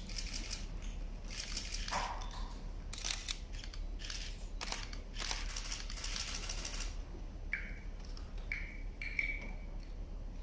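Camera shutters clicking in quick bursts, several runs of rapid clicks in a row.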